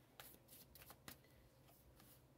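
Faint handling of tarot cards: a few light clicks and rustles as a card is drawn from the spread.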